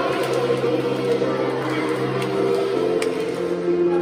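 Children's choir singing with piano accompaniment, with a few sharp hand claps.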